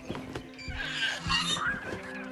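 Film score music with a wavering, whinny-like creature cry over it.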